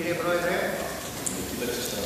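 Indistinct speech: a voice away from the microphone, too unclear for its words to be made out.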